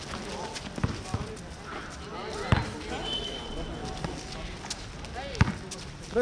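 Basketball bouncing on a court: a few irregular thuds rather than a steady dribble, the loudest about halfway through and near the end, with voices in the background.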